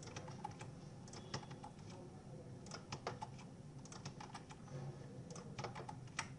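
Faint, irregular clicks of a computer keyboard and mouse, keys and buttons pressed over and over as a schematic component is copied and pasted repeatedly.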